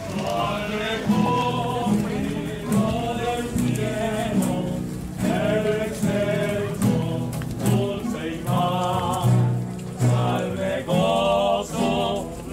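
Voices singing a religious hymn with music, in phrases of a second or two.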